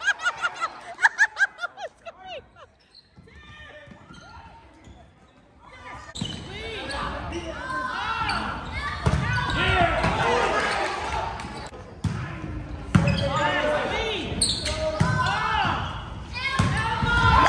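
Volleyball rally on a hardwood gym court, echoing in the hall: a ball bouncing on the floor several times in quick succession in the first two seconds, then a quieter few seconds, then sneakers squeaking on the floor with thuds of the ball being hit.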